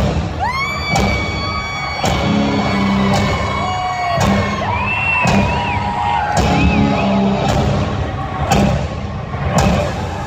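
Live industrial metal band playing loud in a large hall: heavy distorted electric guitars, some holding long notes that bend and slide in pitch, over a pounding drum beat and bass.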